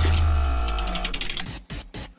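A musical transition stinger: a deep bass hit under a held chord that fades away over about a second and a half, with a quick run of ticks in the middle of it.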